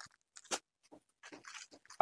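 Faint handling sounds of folded sarees in plastic covers being moved and set down, with one short sharp click about half a second in.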